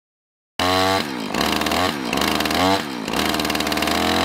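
Husqvarna two-stroke chainsaw engine cutting in suddenly about half a second in and running loud, its revs rising and falling several times.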